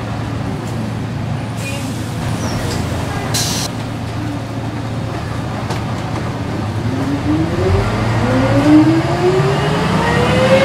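Volvo B10M bus diesel engine heard from inside the cabin, running with a steady low hum. From about seven seconds in it rises in pitch, with a climbing whine, as the bus accelerates through its ZF automatic gearbox. There is a short hiss a little over three seconds in.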